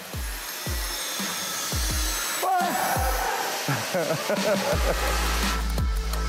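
Electronic dance music with a kick drum about twice a second over a steady hiss; a deep bass note comes in near the end.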